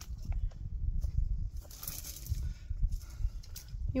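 Footsteps on rock and dry brush as a climber walks up a rocky trail, with scattered small knocks. A low rumble runs underneath, and a short hiss comes about halfway through.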